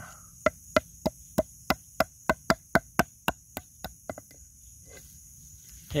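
About fifteen sharp taps, roughly three a second, of a red blade's tip on a clear plastic cup lying on the ground, stopping about four seconds in. A steady high insect drone runs underneath.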